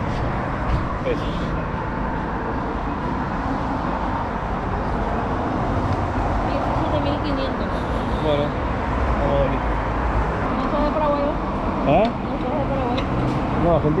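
Steady outdoor traffic noise with a low hum, with a few brief, quiet snatches of conversation.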